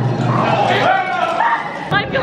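A person's voice making short high-pitched cries that rise and fall, without words, over a low steady hum.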